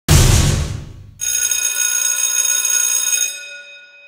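Intro sound effect: a sudden loud hit with a deep low end that dies away over about a second, then a bright, bell-like metallic ring with many overtones that fades out near the end.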